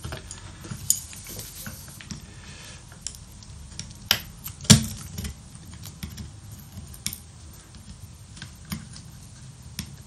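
A small metal hand tool clicking and scraping against an LED lamp's circuit board as a burnt-out LED chip is worked off the board. There are scattered sharp clicks, the loudest a little before and just under five seconds in.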